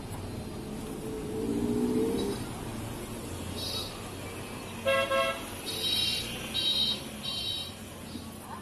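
Passing street traffic with vehicle horns sounding. A low horn sounds about a second in, a sharper horn about halfway through, then three short high-pitched beeps near the end.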